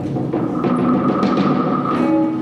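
Live contemporary chamber-ensemble music: a held high note with a series of sharp percussion strokes played over it.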